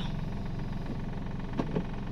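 Steady low hum of a Toyota Agya's engine idling, heard from inside the cabin, with a few faint clicks from the manual gear lever being moved through the gate between gears.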